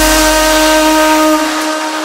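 Deep house track in a breakdown: the kick drum drops out and a single synth note is held steady over a bright hiss of noise, while the bass fades away in the last half second.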